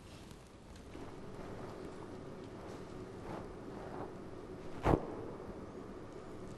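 Quiet church room tone with a faint steady hum, broken about five seconds in by a single sharp knock.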